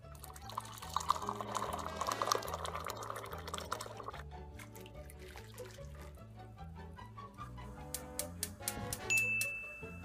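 Water poured from a cup into a frying pan, splashing for the first few seconds, over background music with a steady beat. A few sharp clicks come near the end.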